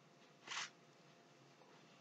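Near silence: room tone, with one brief faint hiss about half a second in.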